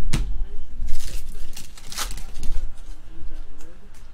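A sharp tap at the start, then about a second and a half of crackling and tearing as a foil trading-card pack is ripped open and its cards handled.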